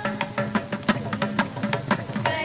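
Hand-drum strokes in a Carnatic-style devotional song, a quick run of several strokes a second over a low held drone, during a short gap between the sung lines.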